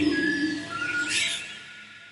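Closing fade of a psytrance track: the beat has stopped, and held synth tones and a bird-like chirp about a second in fade away.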